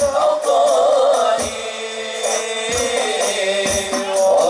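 Islamic sholawat devotional song: male voices singing a wavering, ornamented melody over hadroh percussion, with a few deep bass-drum beats.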